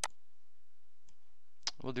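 Computer mouse clicks: one sharp click at the start, a faint one about a second in and another just before a man starts speaking near the end, over a steady low hum.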